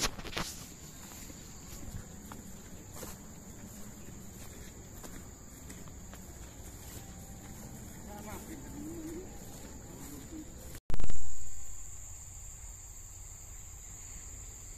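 Insects buzzing in one steady high-pitched note, with soft footsteps through grass. About three-quarters through, the sound cuts out for a moment and then comes back with a loud burst of noise that fades over about a second.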